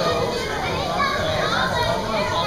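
Young children's voices chattering and calling out, with indistinct talk over the steady background noise of an indoor pool.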